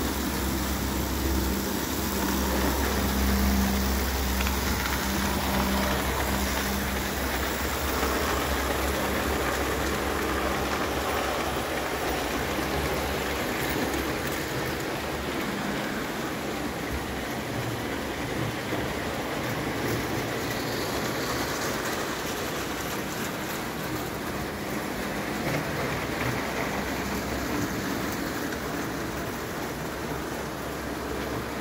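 JEP O-scale tinplate electric train running on metal track: a steady rattling rush of wheels on the rails, with a low motor hum that fades about seven seconds in.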